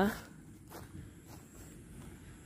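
A few soft footsteps on grass and fallen leaves over a low outdoor background.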